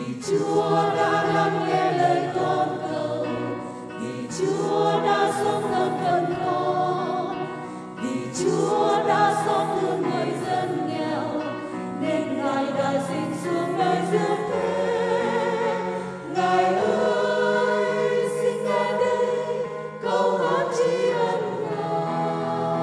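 Church choir singing a hymn over steady instrumental accompaniment, in phrases of about four seconds each.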